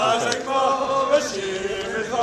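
Men singing a repetitive chant together, with notes held for about half a second at a time.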